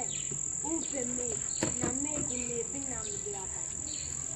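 A continuous, steady, high-pitched insect drone, with quiet talking underneath.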